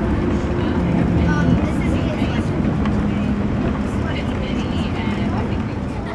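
Steady rumble and motor hum of a moving monorail, heard from inside the cabin, with faint voices underneath.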